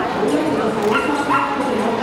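A dog giving a few short, high-pitched barks about a second in, over the steady chatter of a crowd.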